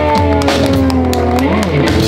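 Live electric blues band playing the closing bars of a song: electric guitar holding and sliding notes over a sustained bass note, with drum and cymbal hits.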